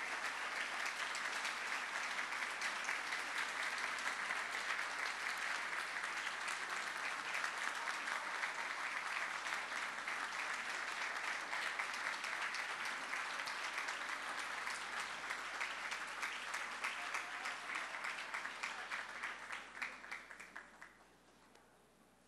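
Audience applauding steadily, the clapping thinning out and dying away about a second before the end.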